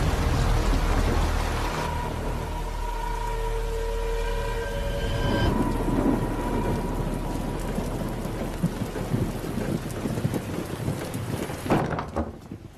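Film sound of heavy rain pouring, with a deep rumble of thunder starting at the outset. A few held tones sound over the rain for several seconds in the first half, and there are scattered sharp knocks later, with a loud hit near the end.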